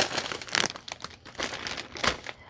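Thin plastic shopping bag and packaged snack bags crinkling and rustling as they are handled, in a run of irregular crackles.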